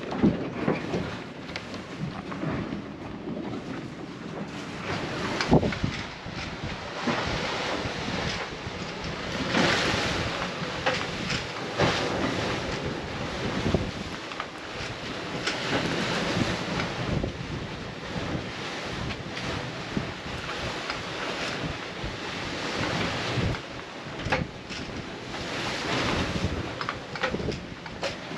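Wind buffeting the microphone and the rush of waves breaking around a sailing catamaran in a confused sea, swelling and easing irregularly with no rhythm.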